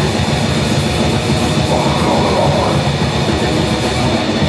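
Rock band playing live at full volume: heavily distorted electric guitars over a fast-played drum kit with constant cymbal strokes.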